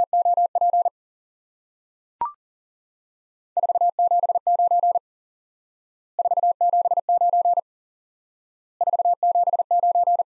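Morse code at 40 wpm, a single steady beep tone keyed on and off. It first finishes repeating "LOOP", then a short courtesy beep sounds about two seconds in. After that, "479" is keyed three times, each about a second and a half long, with a gap of about a second between them.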